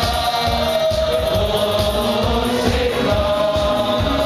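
Choir singing long held notes over music with a pulsing beat underneath.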